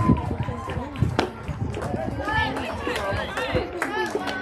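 Voices at a softball field calling out and chattering, some of them high-pitched, with one sharp crack about a second in.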